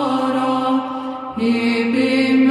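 Men's voices singing Orthodox monastic chant: a melody moves above a low held drone. The voices briefly thin out and move to new notes about a second and a half in.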